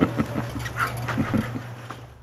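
A man's breathy chuckling in short, uneven pulses that trail off and grow quieter, over a low steady hum.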